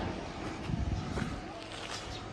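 Outdoor street background noise: a low, steady rumble.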